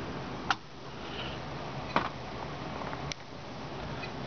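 Plastic ribbon cassette of a Royal electronic typewriter being unclipped and lifted out of the print carrier: three sharp clicks, about half a second, two seconds and three seconds in, over a steady low hum.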